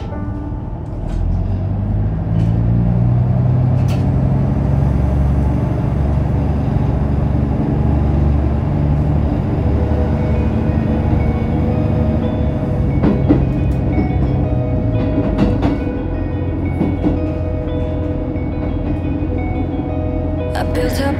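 Diesel railcar engine running up as the train pulls away from a station: a low drone that climbs in steps over the first ten seconds or so, then settles. Background music plays over it.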